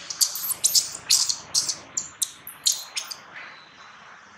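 Newborn long-tailed macaque screaming in a rapid string of about a dozen short, very high-pitched squeals that fade near the end.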